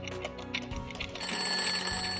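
Alarm-clock sound effect: rapid, even ticking, then a bell ringing starting a little past halfway, over background music.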